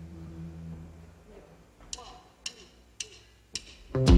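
Held instrumental tones dying away, then a faint voice and four sharp, evenly spaced clicks a little under two a second: drumsticks clicked together to count in the band.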